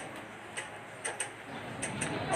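A few faint, sharp, high ticks, about one every half second, over a low background hiss.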